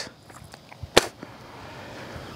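A single sharp snap, like a clap or slap, about a second in, over a faint outdoor background.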